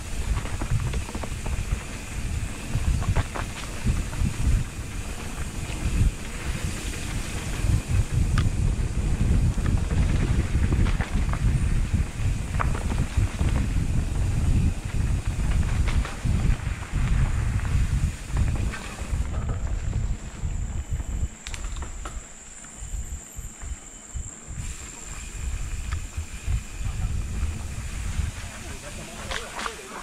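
Mountain bike riding down a dirt forest trail: wind rumbling on the handlebar camera's microphone, with the bike rattling and knocking over bumps and roots. The rumble eases somewhat after about twenty seconds.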